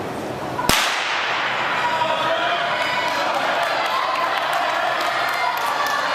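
A starter's pistol fires once, a single sharp crack with an echo, about a second in, starting a sprint race; spectators then shout and cheer.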